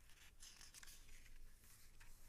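Near silence with a few faint, brief rustles, the sound of hands shifting on a paperback picture book.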